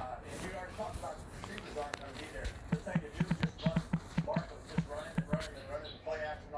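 A quick run of about a dozen short taps, starting a little under halfway in, from fingers typing on a smartphone's on-screen keyboard, with a faint voice in the background.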